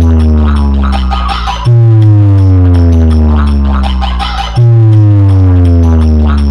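A speaker-check track played very loud through a DJ sound-box stack. A deep bass note comes back about every three seconds, twice here, and each time slides slowly down in pitch, with ticking percussion above it.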